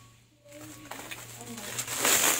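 Bubble wrap crinkling as it is pulled off a bicycle rim, growing louder toward the end, with short low bird calls in the background and a steady low hum.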